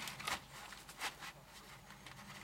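Faint handling sounds: rustling and a couple of light knocks as roofing paper is pushed into place under the raised edge of a wooden shed.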